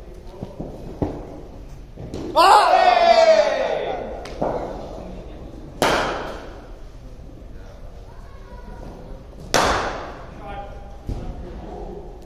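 Sharp cracks of a cricket ball striking bat and pitch, echoing in an indoor net hall: two loud ones about six and nine and a half seconds in, with lighter knocks around them. A loud shout lasting over a second comes about two seconds in.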